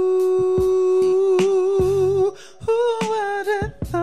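A man singing wordlessly into a handheld microphone: one long, steady note for about two seconds, then, after a brief break, a wavering run of notes.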